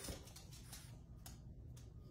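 Very quiet room tone with a few faint, brief ticks.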